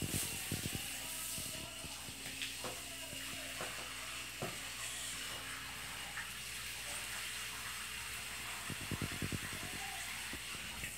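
Garden hose spray nozzle spraying water onto plants, a steady hiss. Near the end, a short run of quick, evenly spaced low puffs.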